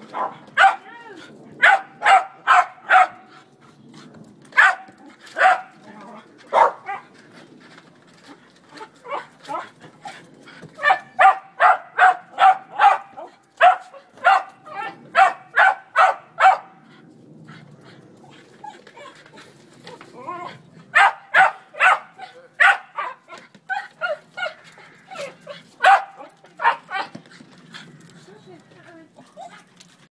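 West Highland White Terrier barking at a basketball in runs of short, sharp barks, about three a second, with pauses between the runs.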